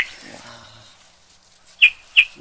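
A live rat caught by the leg in a clamp trap squeaking: short high squeaks, one right at the start and another near the end, with a faint low sound in between.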